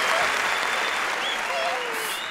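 Studio audience applauding, with a few voices over it; the applause slowly dies down.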